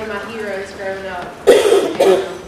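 Speech through a microphone, then a sudden loud cough close to a microphone about one and a half seconds in.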